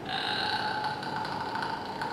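A man's voice holding one long, high-pitched falsetto note, steady in pitch.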